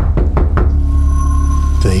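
A quick series of knocks on a front door in the first half second, over a low, steady music drone with a thin high held tone.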